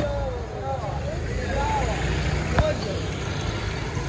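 Busy street market ambience: several people talking indistinctly over a steady low rumble of traffic and motor scooters, with one sharp click about two and a half seconds in.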